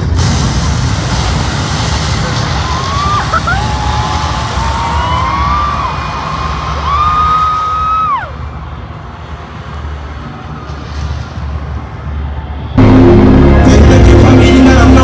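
Arena concert sound, loud crowd noise over the show's intro audio. Between about three and eight seconds in, a high wailing tone glides up and holds a few times. Near the end the concert's music cuts in suddenly and much louder, with a heavy low end.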